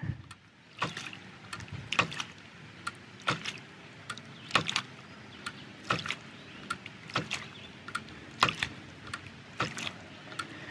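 Brass waste valve of a half-inch hydraulic ram pump being pushed open by hand and clacking shut with a knock of water hammer about every second and a quarter, over a faint rush of flowing water. Each push is an attempt to build pressure and get the pump cycling on its own, but it never takes over: with the delivery pipe at eight feet there is too little back pressure.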